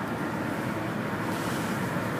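Steady road noise inside the cabin of a moving car: tyres and engine running on at cruising speed.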